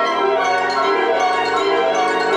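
Symphonic wind band playing loudly: flutes, brass and saxophones, with bell-like percussion ringing over the winds.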